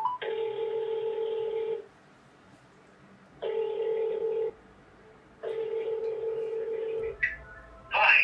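Ringback tone of an outgoing phone call heard through the phone's speaker: three rings of a steady low tone, each about one to one and a half seconds, separated by silent pauses, while the call waits to be answered.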